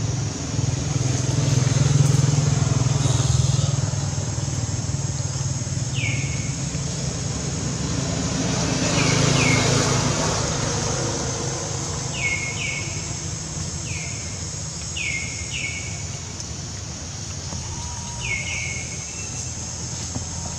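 Outdoor ambience: a low rumble that swells twice, under a steady high hiss. Over it come about nine short high calls, often in quick pairs, each falling in pitch.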